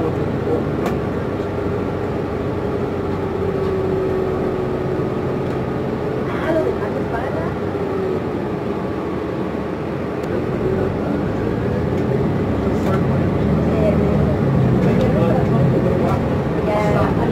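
Inside a New Flyer XN60 articulated natural-gas bus under way: steady engine and drivetrain hum with a held whine, getting louder over the last few seconds.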